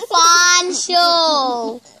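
Young girls singing in high voices: two drawn-out notes, the second sliding down in pitch before it breaks off shortly before the end.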